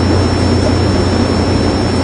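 Steady low hum with even hiss: the background noise of the room and recording, heard in a pause between speech.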